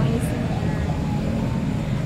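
Steady low rumble of outdoor urban background noise.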